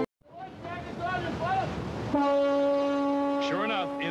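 A ship's horn sounding one long steady blast from about two seconds in, over sea noise with short rising-and-falling cries before it and again near the end.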